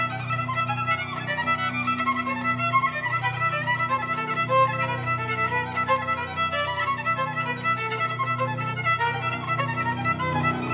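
Solo violin playing a fast passage of many short bowed notes, over sustained piano accompaniment.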